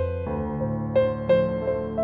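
Calm, slow instrumental music: soft piano notes struck a few times, about a second apart, over held low tones.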